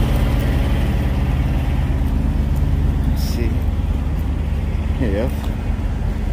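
Truck engine idling steadily, a low even hum, with a short high chirp about halfway through and a brief vocal murmur near the end.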